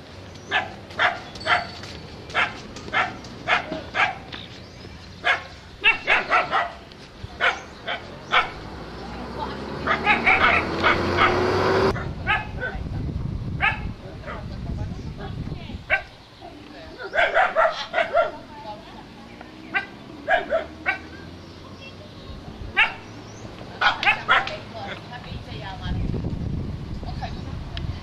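A dog barking over and over, in single barks and quick clusters, up to about two a second. In the middle a rushing sound swells and then cuts off suddenly.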